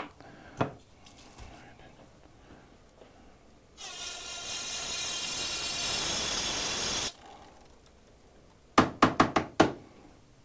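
Aerosol brake parts cleaner sprayed into an aluminium AC hose fitting for about three seconds, a steady hiss that cuts off sharply, flushing out refrigerant oil and grime before brazing. Near the end comes a quick run of sharp knocks.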